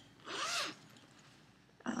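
Zipper on a fabric project bag pulled open in one short stroke of about half a second, its pitch rising and then falling as the pull speeds up and slows.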